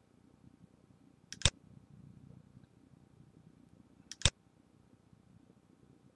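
Two sharp computer mouse clicks, a little under three seconds apart, over a faint low room hum.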